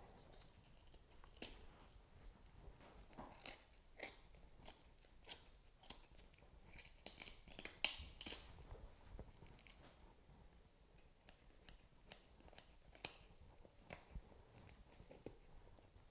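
Scissors snipping through meat and tendons along a pheasant's leg bone: a run of faint, irregular crisp snips and clicks, with a sharper one about eight seconds in and another near thirteen.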